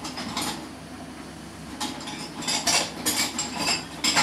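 Kitchen clatter: dishes and metal utensils knocking and clinking together. A run of sharp knocks, several with a brief ring, comes more often in the second half.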